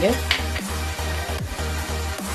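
A hand kneading soft flour-and-yogurt dough in a steel platter, giving a soft, noisy mixing sound. It plays over background music with a regular bass beat.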